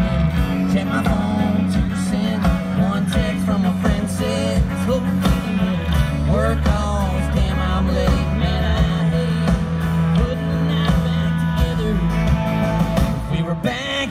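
Live country band playing loudly through the PA: drums, bass, electric and acoustic guitars, with a sung vocal line weaving over the mix.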